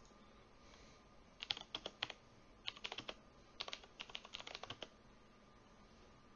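Typing on a computer keyboard: three short runs of quick keystrokes, starting about one and a half seconds in and ending about a second before the end.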